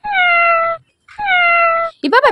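Battery-operated plush toy cat giving two identical electronic meows, each a little under a second long and dipping slightly in pitch.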